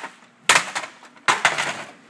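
Two sharp clattering knocks about a second apart, each dying away quickly: the plastic doors and parts of an HP LaserJet P3005 laser printer being handled.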